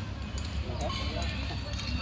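Distant voices of players calling out across the field, with a steady low rumble underneath and a few faint clicks.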